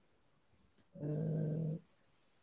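A man's drawn-out hesitation sound "ee", held at one steady low pitch for just under a second about halfway through, with silence before and after it.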